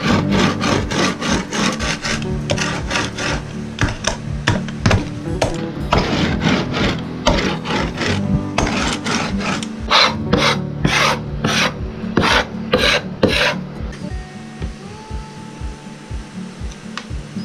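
Mezzaluna rocking chopper mincing garlic and parsley on a wooden board: a quick, even run of chopping strokes against the wood, a few a second, that stops about two seconds before the end.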